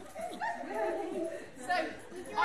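A puppy vocalising during a tug game, mixed with a woman's voice.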